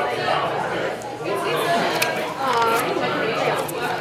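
Speech only: people talking over the chatter of a busy restaurant dining room, with a short click about two seconds in.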